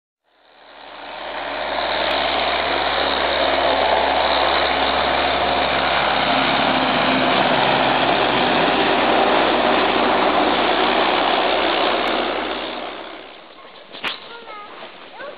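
Farm tractor's diesel engine running steadily as it pulls a loaded trailer. The sound fades in over the first second or two and fades out shortly before the end.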